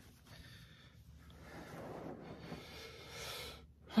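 Soft rustling of polyester-shell down throw blankets and clothing, with breathing, as a person shifts and settles under them; the sound builds about a second in and stops just before the end.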